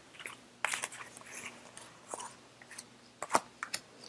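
Faint, scattered clicks and soft rustles: half a dozen small ticks spread through the quiet, the sharpest one a little after three seconds in.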